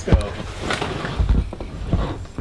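Camera handling noise as the camera is swung around quickly: a low rumble with a sharp knock just after the start and a few lighter knocks later.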